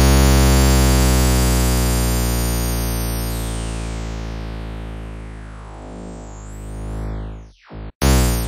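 Harmor additive synthesizer sounding an image loaded into its image-resynthesis section: one held low note with many overtones that fades slowly while its tone sweeps downward and hollows out about six seconds in. It cuts out briefly near the end, just before the note is struck again.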